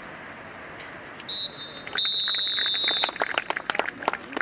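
Referee's whistle: a short blast, then a long steady blast lasting about a second. It is followed by scattered handclaps.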